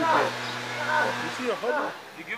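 Indistinct voices talking, over a steady low hum that stops about one and a half seconds in.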